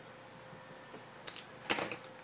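Faint room hiss, then a few short clicks in the second half, with a brief cluster of rattling clicks near the end.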